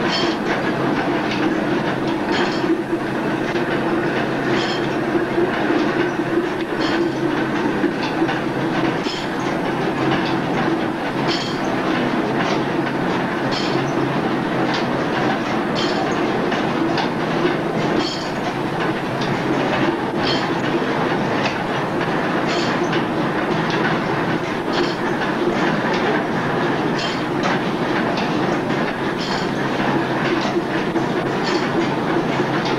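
Belt-driven mill machinery and overhead line shafting running, a steady clattering rumble. Sharp clacks come over it, mostly in pairs, about every two seconds.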